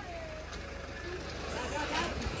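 Truck engine running at low speed with a steady low rumble as the truck creeps past on a wet road.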